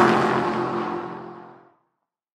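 Tail of a car pass-by sound effect for a logo intro: an engine note just past its pitch drop, loud at first and fading out about one and a half seconds in.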